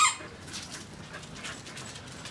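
Corgi taking a treat from a hand and chewing it: faint, irregular small clicks and smacks.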